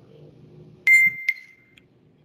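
A short electronic ding: one high, bright tone that starts suddenly a little under a second in, is struck again a moment later, and rings away within about a second.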